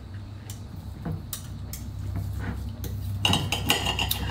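Knife and fork on a dinner plate, clinking and scraping as food is cut, with a few sharp clicks scattered through.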